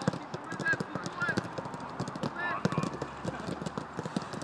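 Footballs being kicked in a quick passing drill on a grass pitch: an irregular run of dull thuds from foot striking ball, a few every second, mixed with footsteps.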